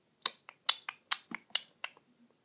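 A quick series of short sharp taps, about eight in under two seconds, from fingertips tapping a tablet touchscreen, pressing the elevator app's buttons.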